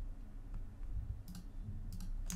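A couple of light clicks from a computer mouse in the second half, over a low steady hum.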